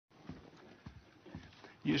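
Three soft, low thuds about half a second apart over faint room noise, with a man's voice starting near the end.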